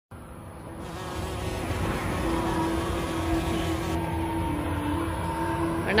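A steady engine drone with a buzzing hum, fading in over the first two seconds and then holding even.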